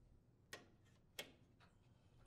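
Two faint, sharp clicks, about half a second apart, as the lid lock wiring loom is pressed under plastic retaining clips on the washer's main top.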